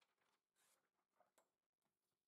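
Near silence: room tone, with a couple of very faint ticks.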